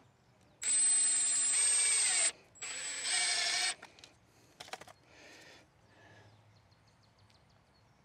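Power drill driving a screw into a wooden batter board in two runs, a steady high whine each time, the first about a second and a half long and the second about a second. Afterwards only a few faint clicks and handling sounds.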